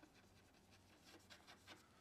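Near silence with faint scratches of chalk on a blackboard as a word is written, a few light strokes in the second half.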